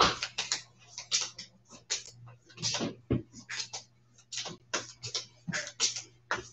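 A deck of trading cards being shuffled and handled in the hands, a run of short, crisp, irregular flicks and snaps, about two or three a second.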